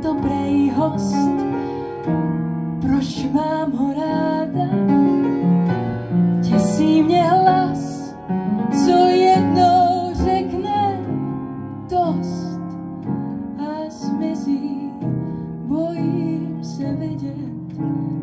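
A woman singing a slow blues song with piano accompaniment, holding long notes with vibrato over the chords.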